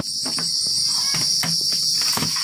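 A loud, steady, high-pitched insect drone with a few light knocks and clicks of laptops being moved on a cloth-covered table.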